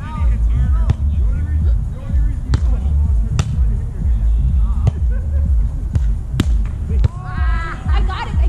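A volleyball being struck by hands and forearms during a rally: several sharp slaps one to three seconds apart as players pass, set and hit, over a steady low rumble. Voices call out near the end.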